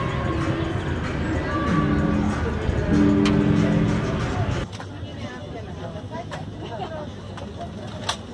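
Background music with long held notes, which cuts off suddenly about halfway through. After that comes a quieter outdoor background of faint, distant voices, with a single sharp click at the very end.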